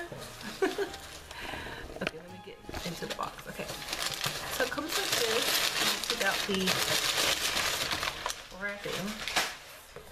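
Brown kraft packing paper crumpling and rustling as it is pulled out of a cardboard shipping box, starting about three seconds in and lasting about five seconds.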